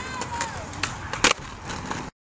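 Skateboard grinding along a concrete ledge. There is a smaller knock just under a second in, then the loud clack of the board landing about a second and a quarter in, followed by wheels rolling on concrete.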